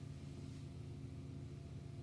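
Quiet room tone: a faint, steady low hum with no distinct sounds.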